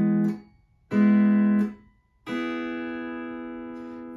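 Pedal steel guitar (Rittenberry) playing three-note major-chord string groups plucked with fingerpicks, each chord cut off abruptly by pick blocking. One chord stops just after the start, a second sounds about a second in and is damped short, and a third, about two seconds in, is left ringing and slowly fading.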